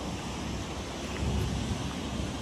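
Wind buffeting the microphone: a steady low rumble with a fainter hiss above it.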